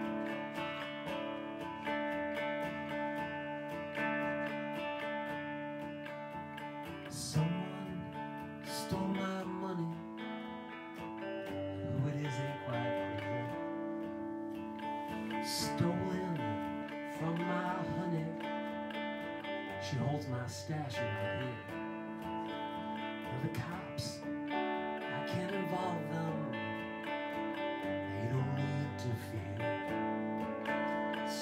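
Live band music: electric guitar playing a slow song over held, sustained chords, at the start of a song.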